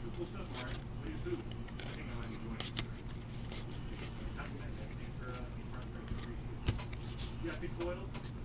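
Trading cards being handled and flipped through a stack by hand: light rustles and small card ticks, with one sharper click about two-thirds of the way in, over a steady low hum.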